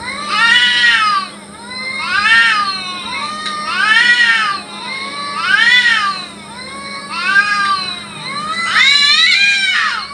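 Domestic cat yowling in a fight standoff: about six long, drawn-out wails, each rising and falling in pitch, coming every second and a half to two seconds, the last one the loudest.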